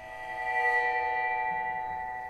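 Dream Chau tam-tam bowed with one hand, swelling up over about half a second into a sustained ring of many overtones, then slowly fading.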